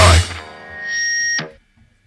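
Final crash of a fastcore hardcore band's guitars and drums dies away, then a high ringing guitar-feedback tone swells and cuts off abruptly, ending the track.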